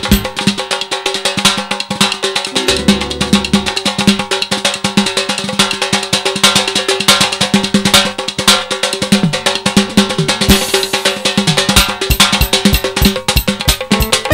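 Azerbaijani folk percussion break: a rope-tuned nagara drum, a qaval frame drum and an electronic drum kit play a fast, dense rhythm, with a few sustained keyboard tones held underneath.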